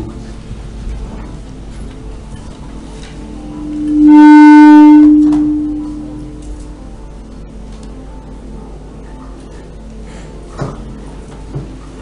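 A single loud, steady low tone from the hall's sound system. It swells up about four seconds in, holds briefly at full loudness with a buzzy ring of overtones, and dies away over about two seconds, with faint clicks near the end.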